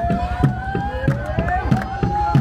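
A drum beating a steady rhythm of about four strikes a second, with a crowd's voices singing long, sliding notes over it to accompany dancing.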